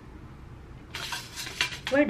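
A quick run of small, sharp clicks and clinks with fabric rustle about a second in, from sewing pins and pinned fabric being handled; before that only faint room hum.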